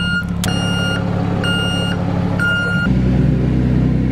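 Flatbed tow truck with its engine running and its warning beeper sounding about once a second, each beep about half a second long. The beeping stops about three seconds in, and the low engine hum deepens and grows louder.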